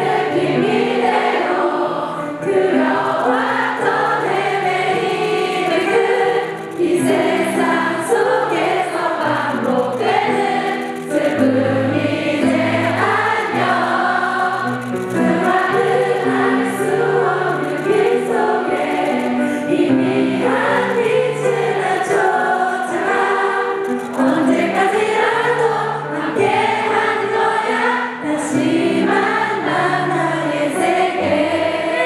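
Many voices singing a song together over sustained stage-keyboard chords.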